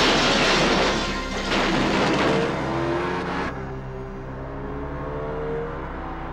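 Movie crash sound effects: a wrecked car grinding and scraping along the pavement amid clattering debris, loud and dense, cutting off abruptly about three and a half seconds in. After that, music and a low steady rumble continue more quietly, with a few short squeal-like glides.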